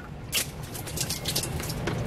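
Dirty rinse water being dumped out of a small plastic portable washing machine tub and splashing down, with a sharp splash about a third of a second in followed by irregular splattering.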